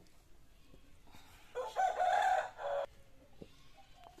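A rooster crowing once, a single call of a bit over a second starting about one and a half seconds in, rising briefly and then held.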